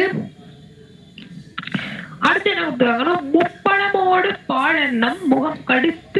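Speech: a single voice talking in Tamil in a rising-and-falling, sing-song manner, starting after a pause of about a second and a half.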